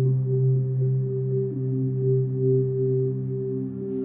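Ominous horror-film drone: several low tones held steadily together, swelling slightly, with no melody or beat.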